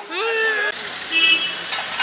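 A short vehicle horn toot about a second in, over low traffic rumble from the street.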